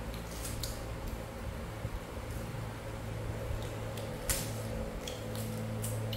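Green lotus seed pods being torn apart and picked at by hand, giving a few short sharp snaps and crackles, the loudest about four seconds in, over a steady low hum.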